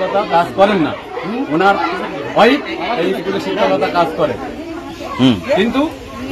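Speech: a man speaking in short phrases, with other voices around him.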